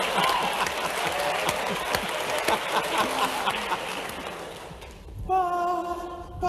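Audience applauding in a recorded concert-hall video, the applause fading away over about five seconds; near the end a voice starts singing sustained, steady notes.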